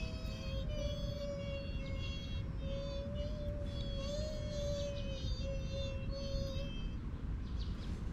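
High-pitched, chirpy singing of tiny voices in short phrases over one held, slightly wavering lower note, presented as goblins (duendes) singing; it stops about seven seconds in. Steady wind rumble on the microphone runs underneath.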